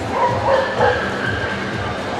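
A dog giving three quick, high yapping barks in the first second, over the steady hubbub of a crowded hall.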